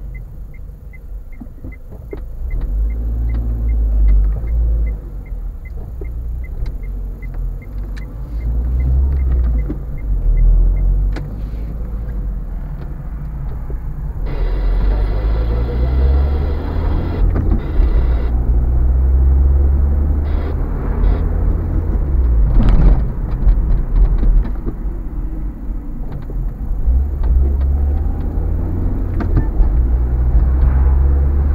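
Car driving at low speed, heard from inside the cabin: engine and road rumble swelling and easing with speed. For the first ten seconds or so a regular ticking, about two and a half a second, runs over it, typical of the turn-indicator relay.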